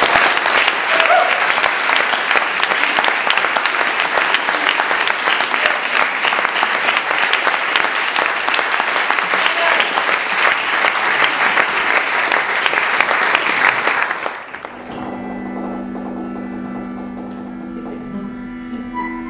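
Audience applauding steadily for about fourteen seconds, then cut off abruptly. Sustained held chords on accordion and bandoneon take over for the last few seconds.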